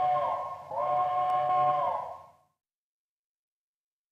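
Steam locomotive chime whistle blown twice, a short blast and then a longer one of several notes sounding together. Each blast bends slightly in pitch as it opens and closes, and the second stops a little past halfway.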